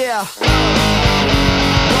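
Distorted electric guitar from an ESP LTD MH-1000 playing a pop-punk part over a backing track with drums, bass and vocals. It opens with a quick falling glide and a brief gap, and the full band comes back in about half a second in.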